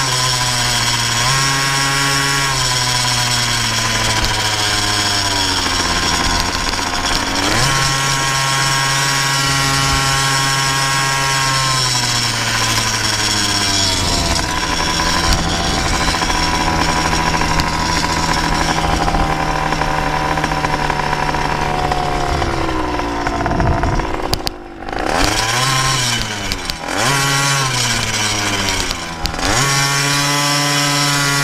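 KTM 50 SX 49cc two-stroke single-cylinder engine on a motorized bicycle, running hard at high revs under throttle, its pitch stepping up and holding. About three-quarters of the way through the revs fall away, then the engine is revved up and down a few times before it settles back to a steady high-rev pitch.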